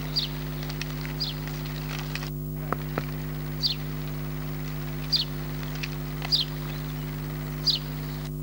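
A bird repeating a short, high, falling chirp about once a second, over a steady low electrical hum. A brief break with two clicks comes between two and three seconds in.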